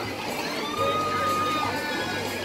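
Spectators at a swim race shouting and cheering, several voices calling over one another, with one voice holding a long call near the middle.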